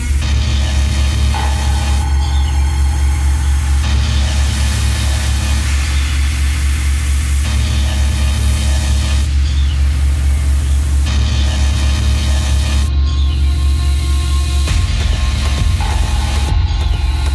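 Techno music from a DJ set: a heavy, steady bass line under layered synth sounds that change every few seconds, with a rapid rhythmic pulse throughout.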